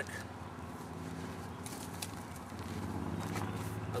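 A steady low mechanical hum, like a motor running in the background, with a few light clicks and rustles from handling things by the dug pit.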